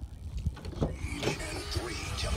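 Pickup truck door being opened with a few clicks, then a radio announcer talking over music becomes audible from inside the cab about a second in. A low rumble runs underneath throughout.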